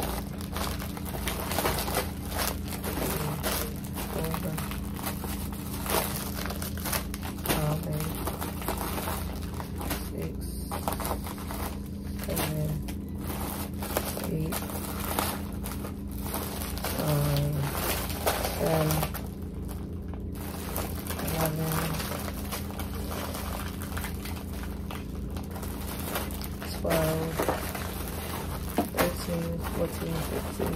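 Plastic treat bags and snack wrappers crinkling and rustling as they are handled and sorted, over a steady low hum.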